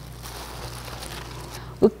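Gloved hands squeezing and crushing strawberries in a stainless steel bowl: a soft, wet squishing over a steady hiss. A woman starts speaking near the end.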